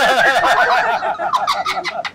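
Hearty laughter: a loud, unbroken run of quick, pitched laughing pulses that speeds up toward the end and stops abruptly.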